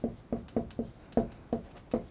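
Dry-erase marker writing on a whiteboard: about eight short, separate strokes and taps as numbers and dashes are written.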